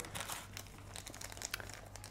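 Small clear plastic zip bags crinkling faintly as they are handled, a scatter of light crackles.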